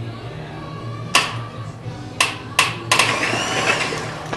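Music playing in the background over a steady low hum, broken by four sharp snaps or knocks in the second half.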